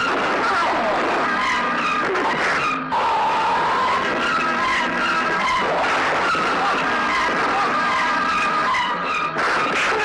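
Film sound effect of tyres screeching: repeated high, wavering squeals over a dense, loud din. There is a short break about three seconds in and another near the end.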